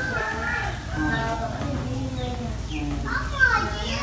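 Children's voices chattering in the background, unclear and off-microphone, over a low steady hum.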